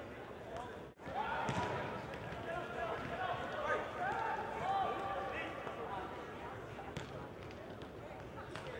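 Players' shouts and calls echoing in a large indoor sports hall, with sharp thuds of a soccer ball being kicked about one and a half seconds in and again near the end. A brief dropout breaks the sound about a second in.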